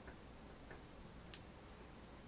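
Near silence: room tone with a few faint light clicks, the sharpest one a little past halfway.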